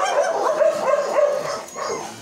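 A dog whining and yipping: a run of short, high cries that bend up and down in pitch.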